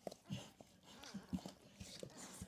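Labrador mother licking her newborn puppy: a faint run of short, wet licking clicks, several a second and irregular.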